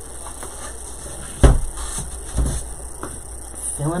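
A single sharp knock about a second and a half in, then a few softer taps and knocks: a candle being lifted and set down into a greenery centerpiece on a tabletop.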